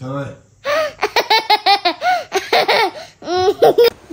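A young boy laughing, quick high-pitched giggles in several bursts after a brief pause.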